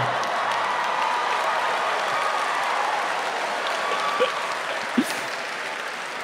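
Live theatre audience applauding after a joke, a steady round of clapping that eases off slightly toward the end.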